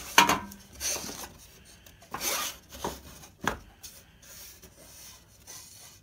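Baltic birch plywood boards being slid, scraped and set against each other on a table saw top while the rabbeted sides are test-fitted. A sharp knock just after the start is the loudest sound, followed by several wood-on-wood scrapes and lighter knocks over the next few seconds.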